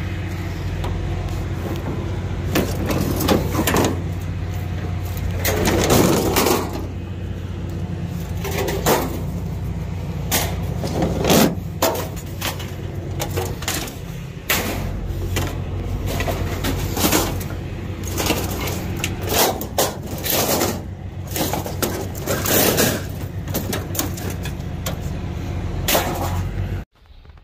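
Sheet-metal scrap being thrown off a pickup bed onto a scrap pile: repeated clangs and crashes of steel panels and cabinets, irregular and many over the stretch, above a steady low engine hum.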